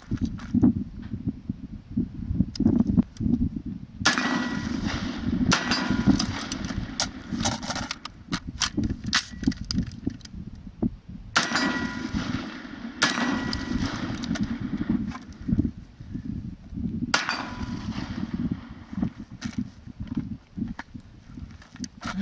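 Strings of gunshots from a Radical Firearms 10.5-inch AR short-barreled rifle in 7.62x39 and then a handgun, fired in quick groups with pauses between, with steel targets ringing on hits.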